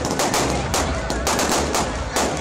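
Fireworks going off in a rapid, unbroken run of sharp bangs, about five a second.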